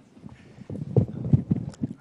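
Handling noise on a handheld microphone: a run of dull thumps and knocks as it is taken up and gripped, the loudest about a second in.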